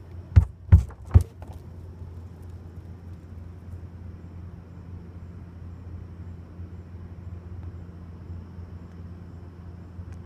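Three sharp knocks on a tipped-over plastic garbage can in quick succession, in the first second and a half, urging a trapped raccoon out. After that only a steady low background rumble.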